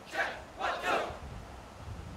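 A squad of marching boys shouting drill calls in unison in time with their steps: a short shout, then a longer one, ending about a second in as the marching stops.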